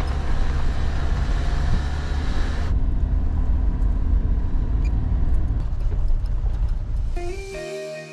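SUV driving slowly along a gravel dirt track: a heavy low engine and tyre rumble, with a loud rushing hiss over it for the first two or three seconds. Music comes in near the end.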